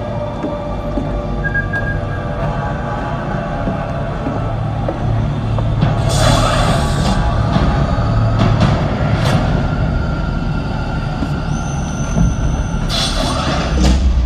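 Dark, brooding film-trailer score over a heavy low rumble, with two loud hissing whooshes, one about halfway through and one near the end.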